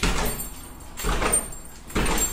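A door being worked by hand, rattling and bumping in noisy strokes about once a second, with a low rumble under each.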